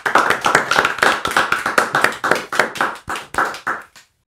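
A few people clapping their hands in a small room, a quick run of claps that thins out and stops near the end.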